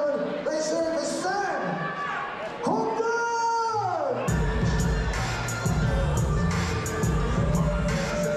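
A ring announcer's amplified voice through the hall's speakers, drawing out a name in one long held call that falls away at the end. About four seconds in, entrance music with a heavy bass beat starts over the speakers.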